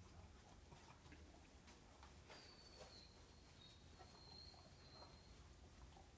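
Near silence: room tone with faint scattered ticks, and a faint thin high tone in the middle for about three seconds.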